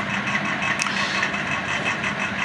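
A steady background hum with a noisy hiss, holding an even level; no distinct knocks or rustles stand out.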